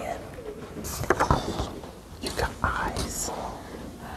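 Quiet, indistinct talk and whispering between people close by, in a small room.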